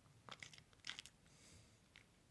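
Faint mouth sounds of someone tasting a sip of whisky: a few short, quiet lip smacks and clicks as the spirit is worked around the mouth.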